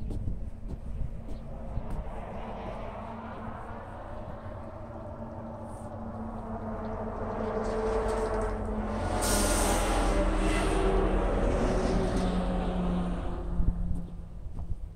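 A motor vehicle passing on the road: engine hum and tyre rumble that grow steadily louder over several seconds, are loudest for a few seconds past the middle, then fall away near the end.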